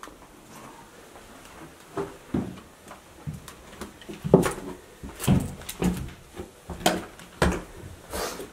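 Footsteps on bare wooden stairs and floorboards, a series of irregular knocks starting about two seconds in, roughly one to two steps a second.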